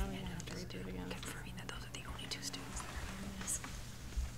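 Faint, low speech and murmuring away from the microphones, over a steady low hum, with a few small clicks.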